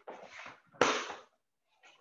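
Forceful, noisy exhales and movement sounds from a karateka performing a kata technique. There is a short burst at the start and a louder, sharp one about a second in.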